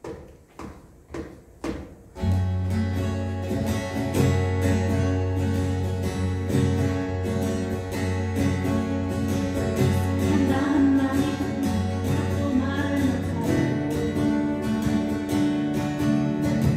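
A few sharp taps, then an acoustic guitar ensemble comes in about two seconds in, strumming a song's instrumental intro over a steady bass line.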